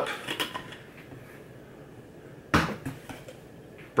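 Lid of a stainless steel Stanley travel mug being twisted and pulled off, with a few light clicks at the start and one sharp knock about two and a half seconds in, followed by a few smaller clatters.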